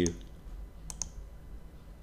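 Two sharp computer mouse clicks in quick succession about a second in, over a faint low hum.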